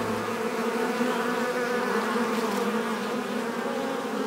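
Insects buzzing: one continuous low drone with a slight waver in pitch.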